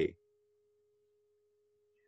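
A faint, steady tone held at one pitch, with nothing else but the cut-off end of a spoken word at the very start.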